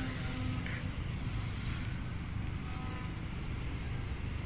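Radio-controlled model airplane's motor giving a thin, high whine, loudest at the start as the plane passes close and fading as it flies away, over a steady low rumble.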